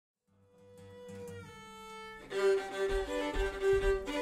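Acoustic English folk band with fiddle and melodeon fading in on a held chord. About two seconds in, the full band starts playing with a steady low beat.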